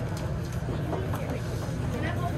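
Shop room noise: a steady low rumble with faint voices of other shoppers and a few light clicks.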